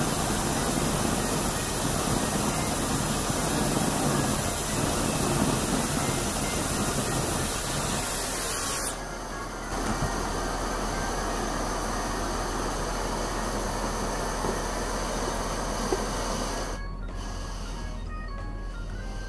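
A Dyson fan blowing at its strongest setting across a lit SOTO G-Stove STG-10 gas burner: a loud, steady rush of air mixed with the burner's hiss. About nine seconds in the rushing suddenly drops, leaving a quieter steady hiss.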